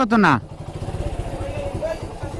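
Motorcycle engine idling with a steady, rapid low pulse. A man's loud voice is heard over it in the first half-second.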